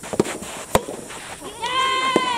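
Soft tennis rally: the rubber ball struck sharply by rackets, twice, the louder hit about three quarters of a second in. Near the end, a long high-pitched shout from a player follows.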